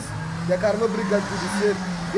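A man talking, with a steady low drone beneath his voice.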